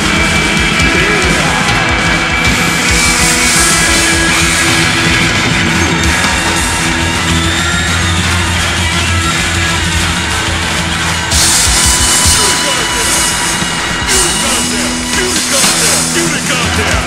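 Rock band playing loudly, with guitars, bass and drums in a dense, continuous passage.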